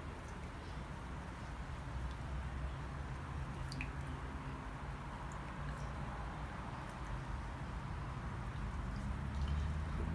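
Quiet ambience of wet snow falling: a steady soft hiss with a few faint ticks, over a low steady hum.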